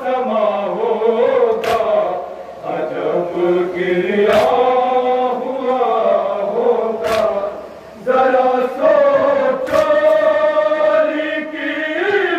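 A crowd of men chanting a nauha, an Urdu mourning lament, in a sustained group melody. They beat their chests in unison during the matam, making four sharp strikes evenly spaced about two and a half seconds apart.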